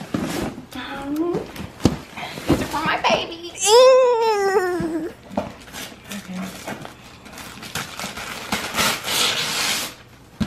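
Gift bag and tissue paper rustling and crinkling as a present is pulled out, densest near the end. A little before halfway a voice gives one long exclamation that falls in pitch.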